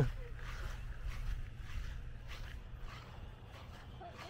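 Faint footsteps on grass over a steady low rumble, as of wind on the microphone.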